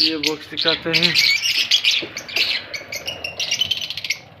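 Lovebirds chattering: a dense run of high, rapid calls with brief pauses.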